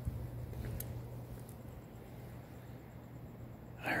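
Quiet room tone: a steady low hum under faint hiss, with one faint tick about a second in. A man's voice starts at the very end.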